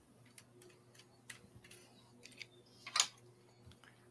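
Scattered light clicks and taps at a work table, the loudest about three seconds in, over faint room noise and a low steady hum.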